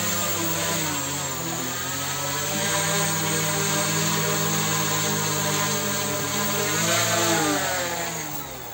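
The two propeller motors of a V-Copter Wing L100 twin-rotor drone running while it is held in the hand, a steady whirring hum. Its pitch dips slightly early on and rises again about seven seconds in, then it starts to fade near the end as the motors slow.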